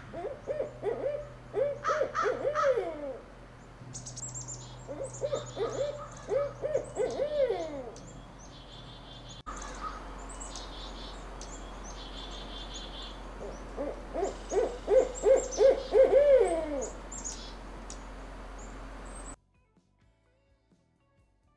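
Barred owl hooting in three bouts of rhythmic hoots, each ending in falling, drawn-out notes: the 'who cooks for you' call.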